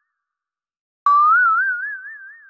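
A cartoon 'boing' sound effect that comes in suddenly about halfway through: a twangy tone that slides up, then wobbles up and down in pitch as it fades.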